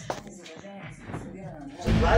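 Quiet speech at a low level, with a single sharp click just after the start; much louder voices come in just before the end.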